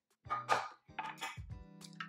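Nonstick frying pans with stainless steel handles clattering on a countertop as one is let go and another taken up: a short scraping clatter about half a second in and a sharper knock about a second in.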